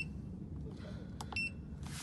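Button press on a pool heat pump's LCD controller: a click, then one short high electronic beep about a second in, acknowledging the press that steps the timer setting on to the next timer. A low steady hum runs underneath.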